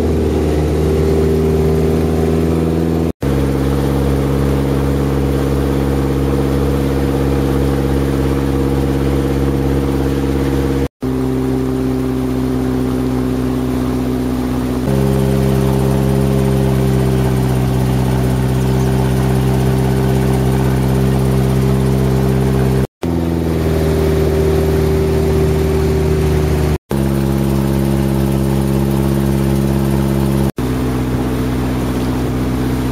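Tour boat's engine running steadily with a loud, low drone. The sound breaks off for an instant four times, the engine note shifting slightly each time.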